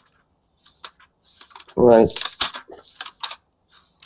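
Computer keyboard typing in short, scattered runs of key clicks, with dead silence between them.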